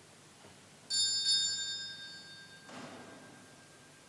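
A small metal bell struck twice in quick succession about a second in, its high ringing tones dying away slowly in a quiet church. A softer, muffled noise follows near the end.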